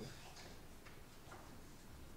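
Quiet room with four faint clicks, about half a second apart.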